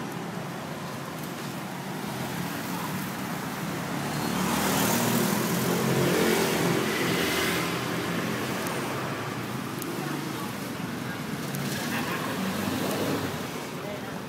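Street traffic with a vehicle engine passing close, swelling about four seconds in and fading by eight seconds; a second, smaller pass comes near the end.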